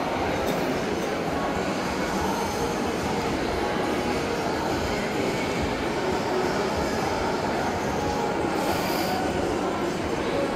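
Steady din of a crowd of shoppers in a large domed hall: many indistinct voices merging into one continuous noise.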